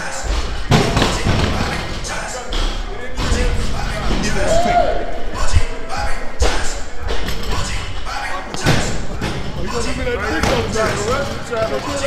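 Loud voices calling out over repeated heavy thuds and slams, with the impacts coming irregularly throughout, in a busy gym weight room.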